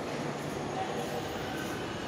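Steady mechanical hum of an escalator running in a shopping-mall atrium, with a few faint held tones over a noisy background, and distant voices.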